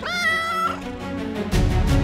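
A domestic cat meows once, a call about two-thirds of a second long that rises in pitch and then holds. About a second and a half in, loud music with a heavy beat comes in.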